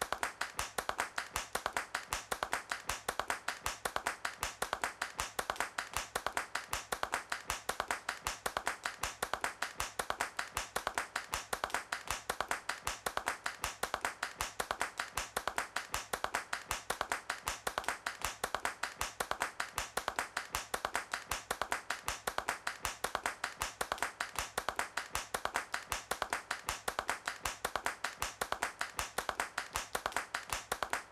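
A steady, fast run of sharp, evenly spaced clicks, several a second, with no tune or voice underneath: a bare clicking pattern in the song's outro.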